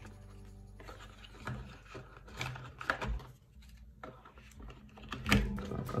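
Soft background music under light knocks and rustles of hands handling a charging adapter, cable and cardboard box inserts. The loudest is a dull thump a little after five seconds in.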